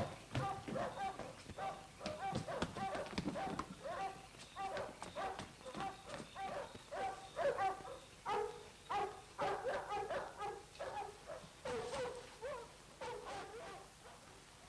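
A dog barking over and over, about two barks a second, fading off near the end.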